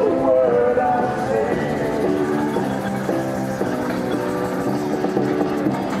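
Music playing to drive a traction-engine game of musical chairs, with steam traction engines running underneath it.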